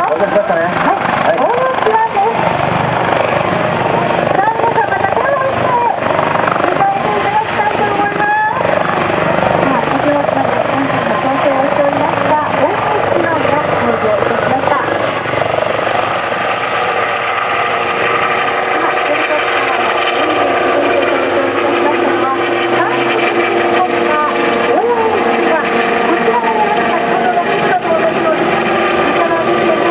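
Kawasaki OH-1 helicopter flying a low display: continuous loud rotor and turbine engine noise. About halfway through, a steady whine comes in over it.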